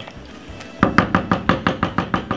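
Wooden spoon stirring a pot of curry chicken, knocking rapidly against the sides of the non-stick pot, about six or seven knocks a second, starting a little under a second in.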